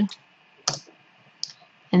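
Two computer mouse clicks in quiet room tone: a sharp one just under a second in and a fainter one about three quarters of a second later.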